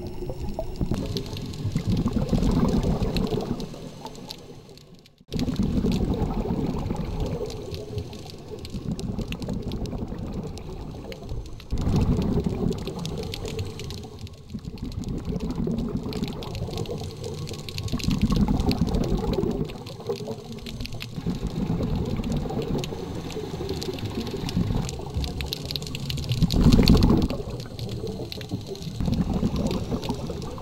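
Underwater sound of a scuba diver's regulator breathing: bursts of exhaled bubbles every few seconds, with quieter stretches between, heard through the camera's underwater housing.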